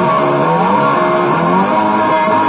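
Guitar music with held notes that slide up and down in pitch.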